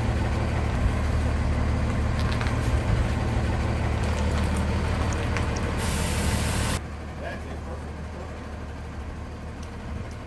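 Diesel engine of a Tiffin motorhome running slowly in reverse under the load of a trailer, a steady low rumble. There is a short hiss of air about six seconds in, then the sound drops suddenly to a quieter hum heard from inside the cab.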